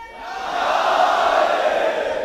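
A large crowd of men shouting a religious slogan (naara) together in answer to a drawn-out chanted call. Their unison shout swells up just after the call ends and begins to fade near the end.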